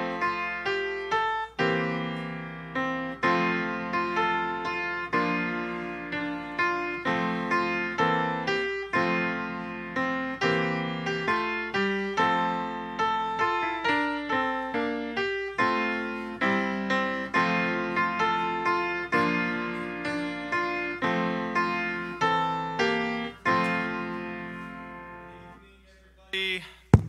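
Solo piano playing a gentle instrumental piece, single struck notes and chords dying away one after another, fading out near the end.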